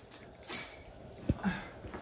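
Quiet closet handling sounds: a short scrape about half a second in as a hanger comes off the closet rail, then a knock and a brief creak as a lower cabinet door is opened.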